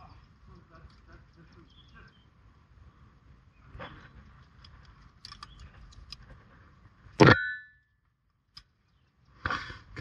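Aluminium carabiners and quickdraws clinking against steel anchor bolts and rings as a climber clips into a top anchor: a few light metal clicks, then one louder metallic clank that rings briefly about seven seconds in.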